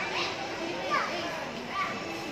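A young child's high voice giving a few short playful cries and calls that rise and fall in pitch, the loudest about a second in.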